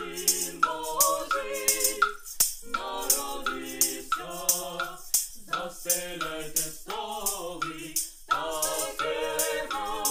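A small mixed group of young voices singing a Ukrainian Christmas carol (koliadka) unaccompanied, phrase after phrase with short breaks for breath. Sharp clicks from hand-held percussion keep a steady beat of about two a second under the singing.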